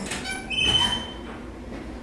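A door opening with a high-pitched squeaking hinge: a short squeal, then a steady high squeak lasting under a second.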